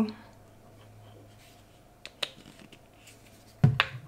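Quiet handling with a couple of small clicks, then one sharp knock near the end as a plastic glue bottle is set down on a wooden tabletop.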